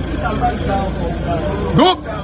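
Steady low rumble of road traffic, with faint background voices. A man's voice cuts in loudly just before the end.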